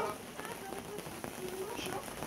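Rain pattering steadily on a canvas canopy overhead, with faint voices murmuring underneath.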